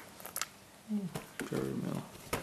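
A baby's short vocal sounds while being spoon-fed puree. A brief sound falls in pitch about a second in, then a longer low one follows near the end. A few faint clicks come before them.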